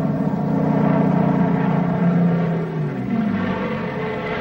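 Steady drone of a formation of propeller aircraft engines, its main tone easing and dropping about three seconds in.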